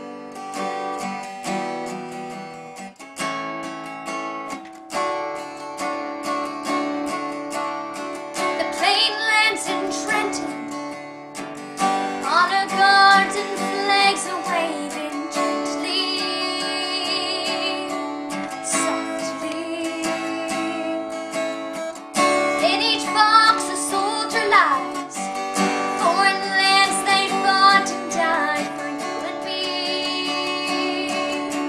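Takamine cutaway acoustic guitar strummed in a slow ballad accompaniment, with a young girl's voice starting to sing along about nine seconds in and carrying the melody in phrases over the chords.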